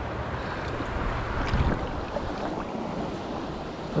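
Steady rush of running river water, with wind buffeting the microphone.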